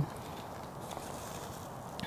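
Backpacking canister stove burning under a pot of pho broth, a steady faint hiss.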